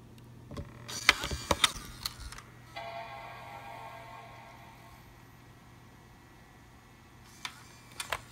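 A few clicks and knocks, then about three seconds in the Mac mini 1,1's startup chime sounds once and slowly fades. The chime comes as the machine powers on with Command-Option-P-R held down, the start of a PRAM (NVRAM) reset.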